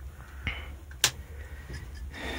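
A single sharp click about a second in, with a fainter tick just before it, over a low steady hum.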